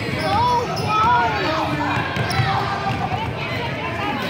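Basketball being dribbled on a gym's hardwood floor during a youth game, repeated low bounces under the voices of players and spectators.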